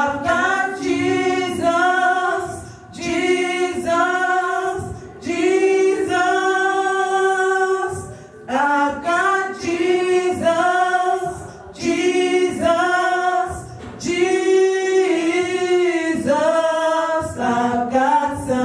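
A small group of women singing a gospel song a cappella into microphones, in short sung phrases with brief breaks and a few long held notes.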